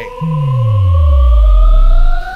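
Suspense sound effect building up: a tone gliding slowly upward over a deep bass sweep gliding downward, growing steadily louder.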